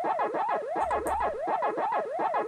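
Pac-Man-style 'waka-waka' chomping sound effect: a synthesized tone sweeping up and down over and over, about three times a second. A short low rumble sounds beneath it about a second in.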